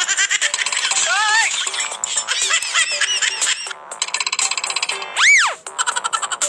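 Cartoon comedy sound effects over music: a run of short, springy boing tones that wobble up and down in pitch, with quick clicks, then near the end one loud tone that swoops up and straight back down.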